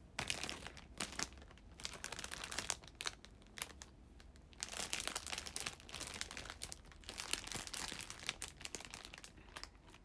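Plastic food packaging crinkling as it is handled, in repeated rustling bursts with short pauses between them.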